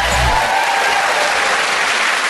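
Studio audience applauding steadily after a correct answer.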